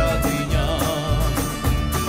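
Live folk band playing: a violin melody over strummed acoustic guitar and a steady drum beat.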